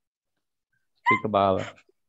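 Only speech over a video call: silence, then about a second in a man says a short phrase with a drawn-out, gliding syllable.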